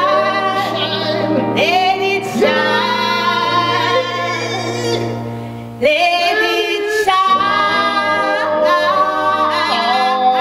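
Live gospel singing by a woman and a man, with held, wavering vocal notes over sustained low electronic keyboard notes. The sound dips briefly and comes back just before six seconds in.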